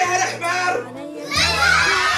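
A large crowd of children calling out and chattering at once, dipping briefly a little before the middle and then louder again, with music playing underneath.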